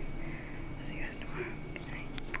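A woman whispering quietly, over a faint steady hum.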